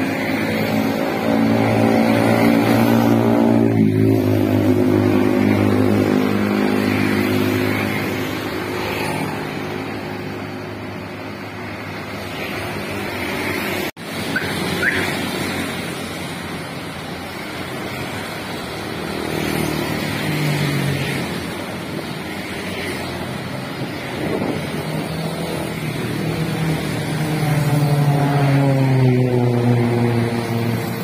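Road traffic of motorcycles and scooters passing by, their engines rising and then falling in pitch as each one goes past. The sound breaks off for an instant about fourteen seconds in.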